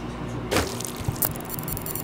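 Sound effect of a drink spilling and splashing: a sudden wet burst about half a second in, followed by a couple of sharp clicks and crackles as the liquid hits the recorder.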